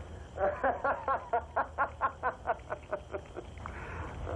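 A person laughing: a rapid run of short, pitched ha-ha bursts that trails off before the three-second mark.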